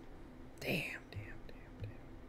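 A man's short whispered, breathy utterance, falling in pitch, about half a second in, with a softer breathy sound just after it and a couple of faint clicks near the end.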